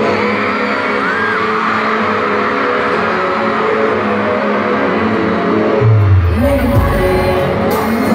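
Live pop concert music played loud over an arena sound system, heard from a phone in the crowd. A heavy deep bass comes in about six seconds in.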